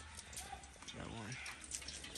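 Quiet outdoor yard ambience between words, with a faint voice briefly in the middle and a few faint clicks.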